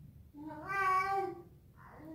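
A three-month-old baby vocalizing in two drawn-out, whiny calls: one about half a second in lasting about a second, and another starting near the end.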